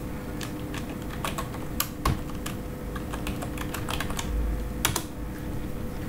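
Typing on a computer keyboard: a run of irregular key clicks, with a few louder clicks about two seconds in and again near five seconds.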